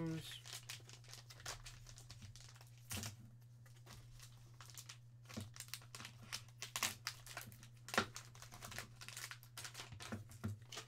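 Plastic bags crinkling and rustling as they are handled and pulled open to unwrap a packaged graded card. The crackles are faint and scattered, with a few louder rustles about three, seven and eight seconds in.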